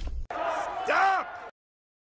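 A short voice exclamation rising and falling in pitch about a second in, just after a sudden cut in the cartoon soundtrack; the sound stops abruptly shortly after.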